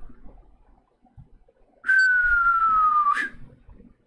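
A person whistles one long note that slides slowly down in pitch, starting about two seconds in and lasting a little over a second.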